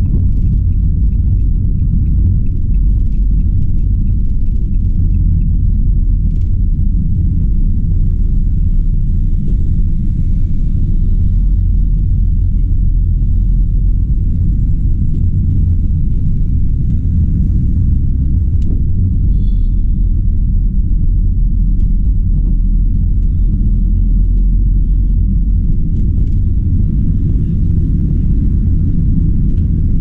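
Steady low rumble of a van driving, heard from inside the cab: engine, tyre and wind noise at an even level.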